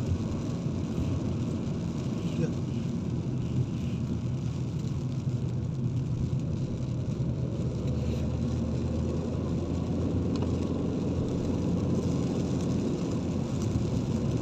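Steady low rumble of a car's engine and tyres on a wet road, heard from inside the cabin.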